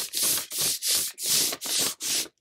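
An ink-laden calligraphy brush swept across a sheet of paper in quick back-and-forth strokes, about five scratchy swishes in two seconds. The brush drags a streaky, dry-brush line with each stroke.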